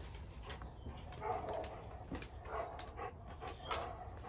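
A dog barking faintly a few times in the background, over light rustling and tapping of paper being handled.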